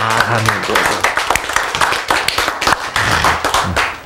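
Hand clapping from a small group, with voices mixed in.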